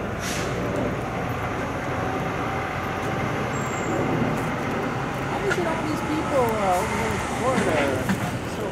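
Steady traffic noise of container trucks running and passing at a port terminal, with faint voices in the second half.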